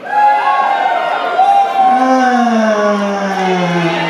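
A male rock singer's voice through the PA holding two long vocal calls to the audience, the second sliding slowly down in pitch over about two seconds.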